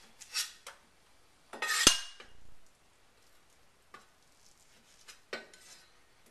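Cleaver slicing rehydrated Chinese black mushrooms on a wooden chopping board: a few separate cuts and scrapes, with one sharp knock of the blade on the board about two seconds in.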